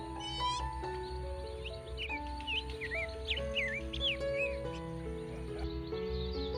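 Background music of slow, held melodic notes, with birds chirping over it: a quick trill just after the start, then a run of short chirps between about two and four and a half seconds in.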